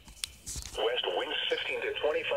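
A radio announcer's voice reading a weather forecast, heard through a small radio speaker with a thin, narrow sound. There is a brief click about a quarter second in, before the voice resumes.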